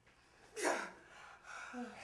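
A person's sharp gasp of shock about half a second in, followed by shaky breathing and the start of a vocal whimper near the end.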